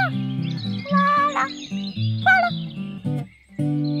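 Background music of steady plucked-guitar notes with a higher melodic line gliding above them. It briefly drops away shortly before the end, then comes back with a held chord.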